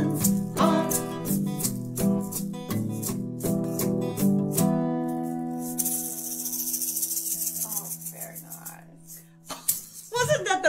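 Two steel-string acoustic guitars strumming the closing chords of a song, then one last chord left ringing and slowly fading from about five seconds in. Over the fading chord an egg shaker rattles for a few seconds to end the song.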